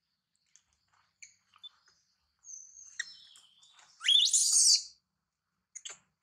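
Infant macaque crying in shrill, high-pitched calls: thin cries build up, then a loud rising scream about four seconds in.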